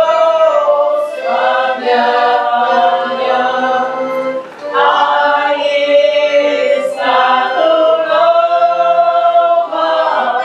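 Group of voices singing a Polish folk wedding song unaccompanied, in long held phrases with short breaks between them.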